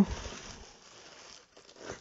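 Paper packing in a cardboard box being torn and rustled by hand as the box is opened, loudest at first and fading over about a second and a half, with a brief faint rustle near the end.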